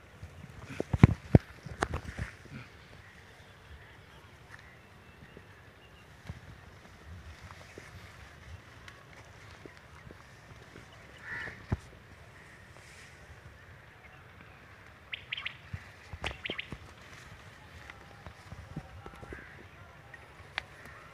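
Birds calling in short clustered bursts near the middle and again about three quarters of the way through, over quiet outdoor background, with a few loud sharp knocks about a second in.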